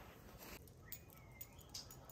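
Near silence, with a few faint clicks and one short, faint high-pitched squeak about a second in.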